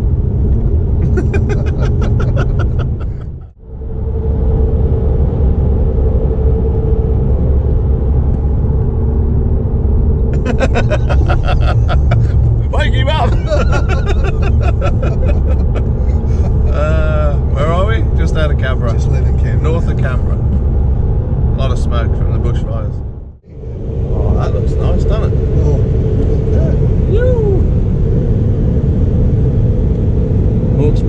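Road and engine noise inside a moving car's cabin, a steady low rumble, with people talking over it for much of the time. The sound dips out briefly twice, at joins between clips.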